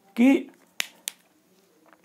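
Two sharp clicks about a third of a second apart: a marker tapping against a whiteboard.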